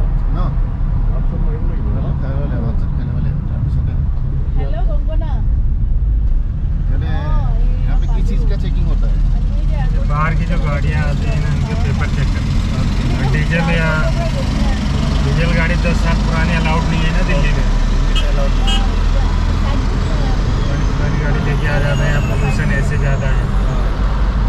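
Steady low rumble of a moving car heard from inside the cabin, with voices talking over it.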